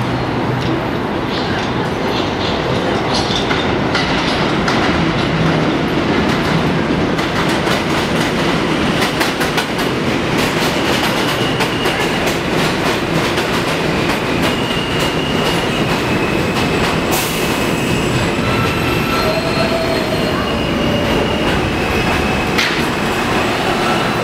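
An R160 New York City subway train pulls into an elevated station: a loud, steady rumble and clatter of wheels on the rails. High-pitched squeals come in over the second half as it slows to a stop.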